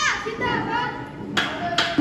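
Boys' voices shouting a slogan with raised fists, cutting off about half a second in, followed by quieter crowd background and two sharp knocks near the end.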